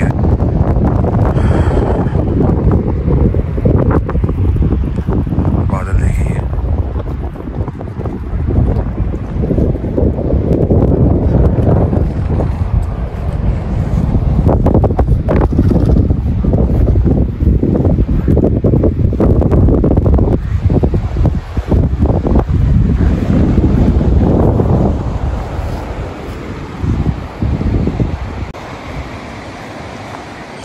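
Strong gusty wind buffeting the microphone in a loud, uneven low rumble, easing off near the end.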